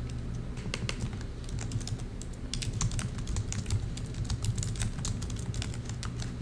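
Typing on a computer keyboard: a run of irregular key clicks, several a second, over a steady low hum.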